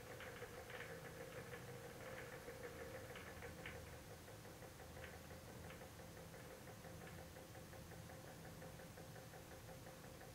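Faint hum of a small motorized display turntable slowly turning, with light irregular ticking that thins out about halfway through.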